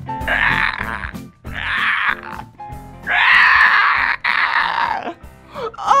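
A man imitating dinosaur roars: three rough, growling roars, the last one longest and loudest, over light background music.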